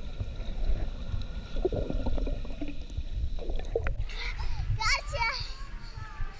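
Muffled underwater rumble of swimming-pool water heard through a submerged action camera. About four seconds in, the sound opens up as the camera is above water and a young child's high-pitched voice rings out over splashing water.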